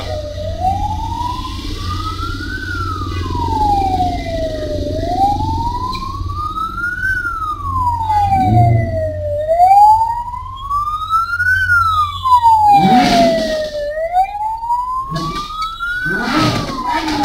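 A siren wailing, its pitch sweeping slowly up and down about every four and a half seconds, over the steady low rumble of idling engines. A few short, louder bursts of engine or street noise break in near the middle and near the end.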